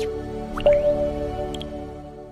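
Intro jingle of short struck notes climbing in pitch: one note rings and fades, then a higher note lands with a quick rising blip about two thirds of a second in and slowly fades away.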